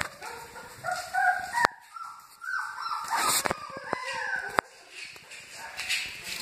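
Newborn Great Dane puppies whining and squealing in short, high-pitched, wavering cries, with a few sharp clicks between them.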